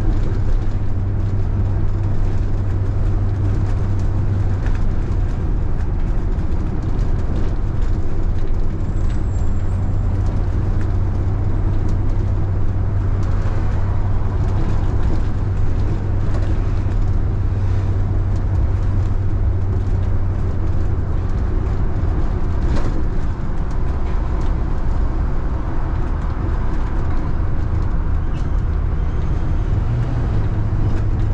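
Steady low rumble of a road vehicle driving along a city street, engine and road noise without a break. There is a brief tick about 23 seconds in.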